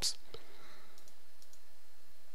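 A few faint, sharp clicks, about half a second apart, over a steady low hiss. It opens with the tail end of a spoken word.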